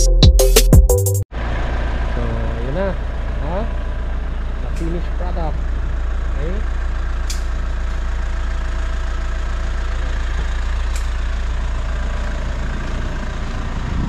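Music with a beat stops abruptly about a second in. A steady machine hum follows, with a strong low rumble, faint distant voices and a few sharp clicks.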